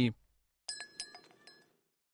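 Spent metal tear gas canisters clinking against each other and the pavement: a quick run of light metallic clinks, each with a short ring, starting about half a second in and lasting about a second.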